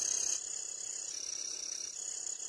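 A steady high-pitched tone, much quieter than the speech around it, that steps slightly lower about a second in.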